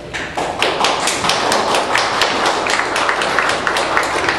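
A group of people clapping their hands in applause, starting a moment in and keeping up steadily.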